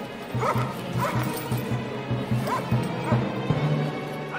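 A dog barking a few times in short, sharp yelps over film music with a fast-pulsing low note.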